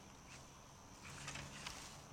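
Quiet pond-bank ambience: a faint steady high insect buzz, with a few soft ticks and rustles about a second in as a fishing rod is cast.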